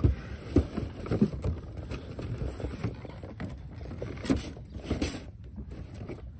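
Low, uneven rumble with scattered bumps and a brief hiss about four to five seconds in: wind on the microphone and a handheld camera being moved and handled.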